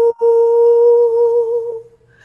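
A woman singing unaccompanied, holding one long steady note with a brief break just after the start; the note fades out near the end.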